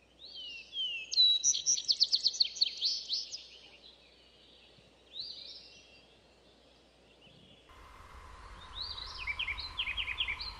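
Birds singing: a fast run of bright chirping notes for about two seconds, a single call a little later, and more chirps near the end. A steady hum comes in under the birds a couple of seconds before the end.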